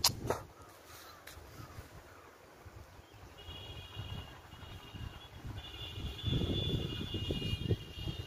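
Outdoor bird calls, drawn-out and high-pitched, coming in about three seconds in and continuing, with low gusty rumbling on the microphone near the end. A sharp click right at the start.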